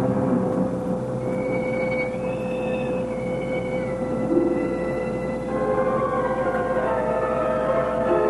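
Film score: a sustained low drone with high held notes entering and changing pitch in steps, thickening into more layered chords after about five and a half seconds.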